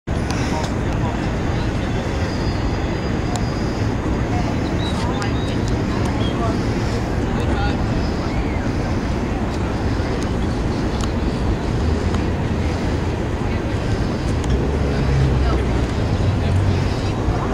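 Wind rumbling on the microphone over the steady chatter of people talking around it.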